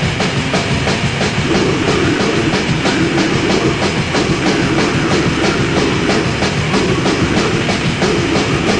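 Lo-fi black/death metal from a cassette demo: distorted guitars over fast, even drumming, about six beats a second.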